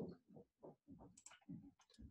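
Near silence with a few faint, short clicks of a computer mouse.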